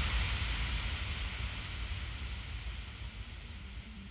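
Breakdown in a psytrance track: with the beat cut out, a wash of white noise over a low rumble fades away steadily. A faint, steady low drone comes in near the end.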